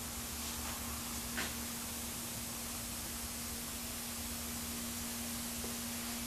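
Room tone: a steady hiss with a faint steady low hum, and one faint click about one and a half seconds in.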